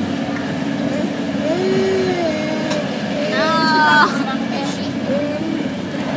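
Steady running noise of a moving train, with a toddler whimpering and crying in a few short wails, the highest about three and a half seconds in.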